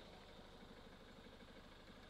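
Ford Mondeo Mk3 engine idling faintly and steadily, with an even low pulse.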